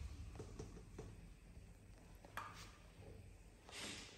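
Near silence: quiet room tone with a low steady hum and a few faint light clicks, and a brief soft hiss just before the end.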